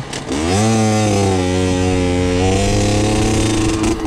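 50cc two-stroke motorcycle engine revving up. Its pitch climbs over about half a second, holds high for about three seconds with a brief dip and rise, then falls away near the end.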